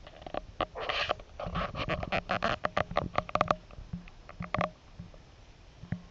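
A Spiegel Relaskop's spring-loaded clicker being pressed over and over, releasing and braking the internal scale dial. It makes a quick run of sharp clicks for about three and a half seconds, then a few scattered clicks.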